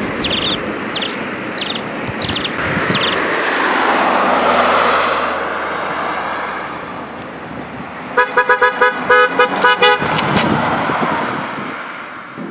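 Traffic passing on a country road, swelling and fading, with a car horn tooted in a rapid string of short beeps about eight seconds in.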